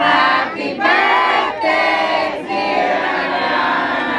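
A crowd of people singing together in phrases, with short breaks between them.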